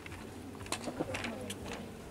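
A pigeon cooing in the background, with two sharp clicks near the middle.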